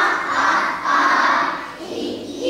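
Many young children's voices sounding together, loudest for about the first second and a half and then easing off.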